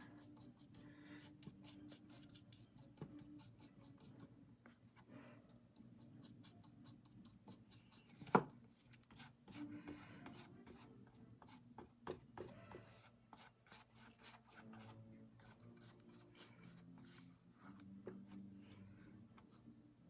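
Flat paintbrush rubbing and scratching over a stretched canvas in many short, faint strokes, with a single sharp tap about eight seconds in.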